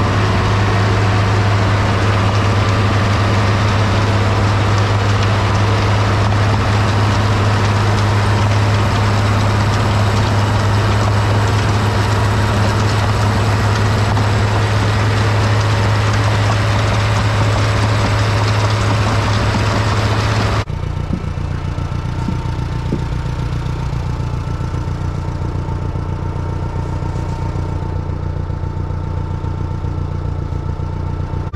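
International 1256's turbocharged diesel six running steadily while it drives a New Holland flail tank spreader flinging manure. About twenty seconds in, the sound cuts abruptly to a quieter, steady engine hum.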